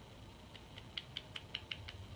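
A quick run of about eight small squeaky ticks, several a second: a liquid liner's fine brush wand being worked and wiped against the bottle's neck.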